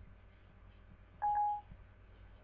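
Siri's start-listening chime on an iPhone 4: a single short electronic beep a little over a second in, signalling that Siri is open and waiting for a spoken request.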